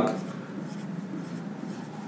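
Marker pen writing digits on a whiteboard: faint scratching strokes.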